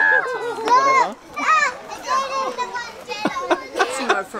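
Young children's excited voices, high squeals and chatter, with a few short clicks near the end.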